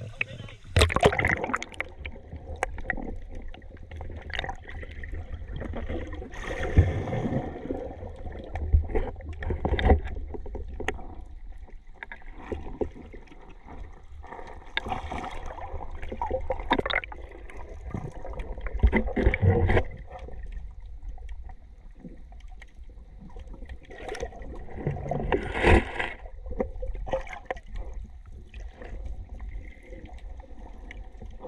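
Sea water sloshing and gurgling around an action camera's waterproof housing as it rides at the surface and then goes under, muffled, with a steady low rumble and irregular louder surges.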